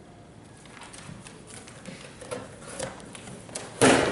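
Cardboard box and paper being handled: scattered crackles and rustles, then one loud, sudden noise near the end as a box flap is pulled open.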